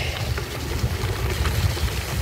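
Wind buffeting the camera microphone: a low, uneven rumble that rises and falls without a break.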